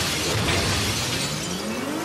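Glass shattering as a motorcycle bursts out through a window, with the motorcycle's engine revving up in the second half.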